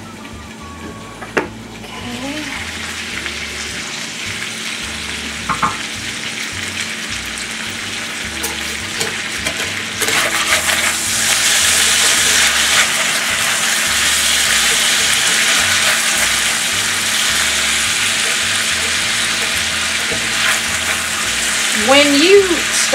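Diced potatoes sizzling in oil in a cast-iron skillet, with a short clink about a second in as the pan lid comes off. The sizzle grows louder about ten seconds in as a metal spatula scrapes and turns the potatoes over the bottom of the pan.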